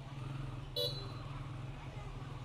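Street traffic: a steady low engine hum with a short, sharp vehicle horn beep just under a second in.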